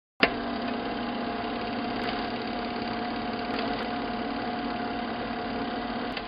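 A steady mechanical hum with hiss, starting suddenly at the very beginning.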